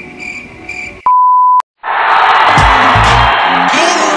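A single pure, steady beep about half a second long, about a second in, cut cleanly in and out. After a brief silent gap, loud background music with a regular bass beat starts about two seconds in.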